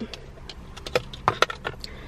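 Small makeup packaging being handled and opened to take out a shadow stick: a run of light clicks and taps, mostly in the second half, over a steady low hum.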